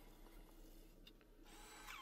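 Faint whirr of a Brother handheld label maker printing a label and feeding the tape out, a little louder near the end.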